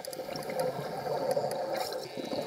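Underwater bubbling and gurgling from a scuba diver's exhaled bubbles, slowly growing louder.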